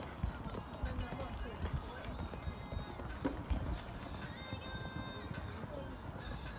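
A show-jumping horse cantering on a sand arena: dull hoofbeats on soft footing, over a low murmur of background voices.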